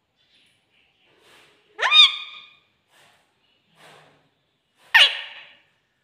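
Caged rose-ringed parakeet giving two loud, sharp calls about three seconds apart, each sweeping quickly upward in pitch. Softer, faint chatter comes between the calls.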